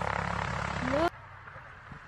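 A light aircraft's engine and propeller running steadily, with a voice counting "three". It cuts off abruptly about a second in, leaving much quieter outdoor background.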